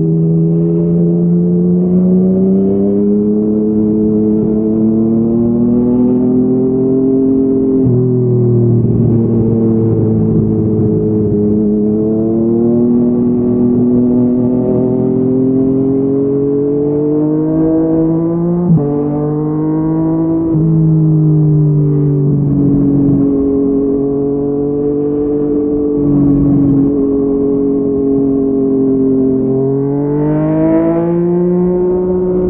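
Yamaha MT-09 inline three-cylinder engine running through a Yoshimura R55 slip-on exhaust under light acceleration in traffic. Its pitch climbs slowly and drops sharply at gear changes about 8 and 19 seconds in, with a short click at the second change.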